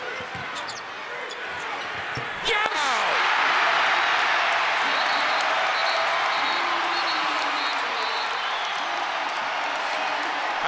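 A basketball being dribbled on a hardwood court over arena crowd noise. About three seconds in, the crowd bursts into loud, sustained cheering for a go-ahead basket.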